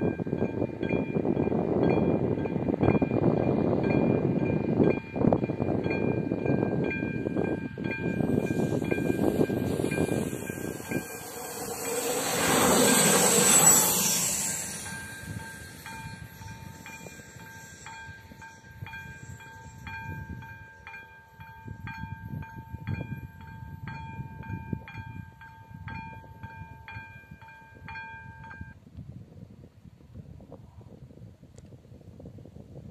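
A local passenger train rumbles past the level crossing, loudest about 13 seconds in, while the crossing's electronic warning bell rings in an even repeating beat throughout. The bell stops shortly before the end as the crossing's red lights go dark, the signal that the train has cleared.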